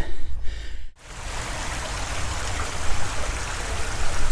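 Steady rushing of a small stream, starting abruptly about a second in; before that, only a low rumble.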